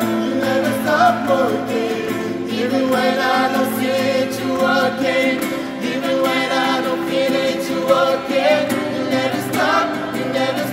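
Small group of men and women singing a gospel worship song together in harmony, accompanied by a strummed acoustic guitar.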